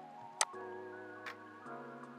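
Quiet background music holding sustained chords that change about two-thirds of the way in, with two sharp clicks about a second apart from the computer's keyboard and mouse being worked.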